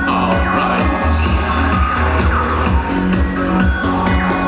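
Live electronic darkwave music played loud through a club PA. A heavy bass pulses under synthesiser lines to a steady beat.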